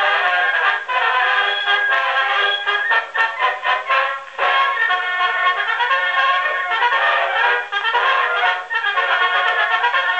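A military brass band on a 1905 Edison two-minute black wax cylinder, played acoustically on an Edison Model B Triumph phonograph through its large brass horn. The sound is thin, with no deep bass, and there is a brief lull about four seconds in.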